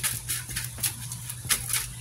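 Tarot cards being handled on a table: a few light, irregular clicks and taps over a steady low hum.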